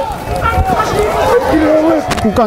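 Speech only: a man talking continuously, match commentary, over faint outdoor background noise.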